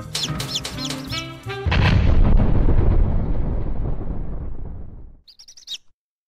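Slow jazz music cut off about a second and a half in by a cartoon explosion sound effect, a loud boom that rumbles and fades over about three seconds. A few short, high bird chirps follow near the end.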